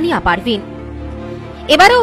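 News narration over background music. The voice speaks briefly, pauses for about a second while the music's steady held tones carry on alone, then resumes near the end.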